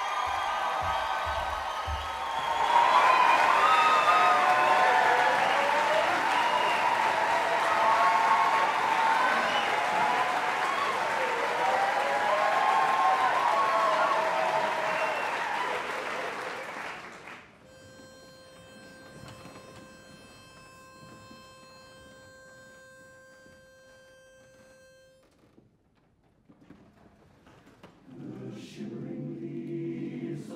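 Audience applauding and cheering, cut off abruptly about two-thirds of the way through. A steady single reedy note with many overtones follows for several seconds, a pitch pipe giving the starting note, and near the end a barbershop men's chorus begins singing a cappella in low voices.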